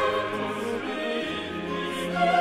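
Choir singing with orchestral accompaniment in 18th-century classical style, several voices holding sustained notes over the instruments.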